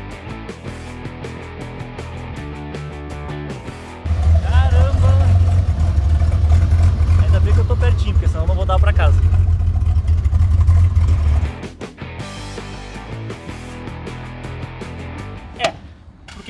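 Background music, then, from about four seconds in, a loud low rumble of a Chevrolet Omega CD's 4.1-litre straight-six engine running close by, with a man's voice over it. The rumble cuts off sharply about seven seconds later, leaving quieter background sound.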